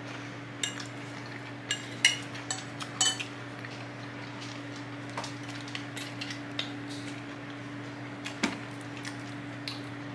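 Metal forks clinking and scraping against bowls during eating: a cluster of sharp clinks in the first three seconds, then a few more scattered later. A steady low hum runs underneath.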